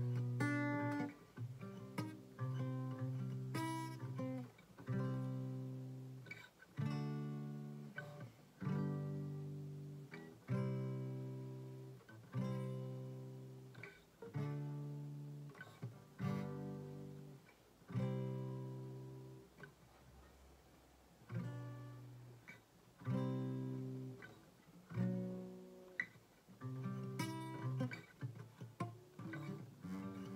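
Acoustic guitar strummed: chords struck about every two seconds and left to ring and fade, with quicker strumming near the start and the end.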